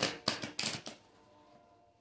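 A deck of tarot cards being shuffled by hand: a fast run of card flicks that stops about a second in.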